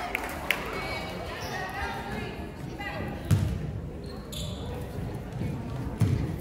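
A basketball bouncing on a hardwood gym floor, with one sharp thud about halfway through, over the chatter of voices in the gym.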